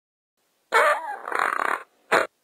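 A loud comic sound effect laid over a dead-silent track: a wavering, grunt-like noise lasting about a second, starting just under a second in.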